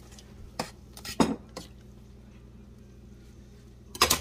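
A metal spoon stirring in a stainless steel pot of liquid, clinking against the pot four times in the first half, loudest about a second in. Then only a faint steady low hum.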